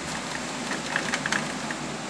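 Steady fan-like room hum with a few faint light clicks about halfway through, from SATA cables being handled inside a computer case.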